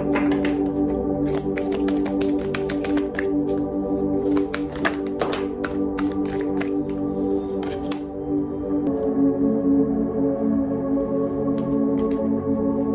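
Soft ambient background music with steady held tones, over quick, dense clicking of an oracle card deck being shuffled by hand. The shuffling stops about eight seconds in and the music carries on.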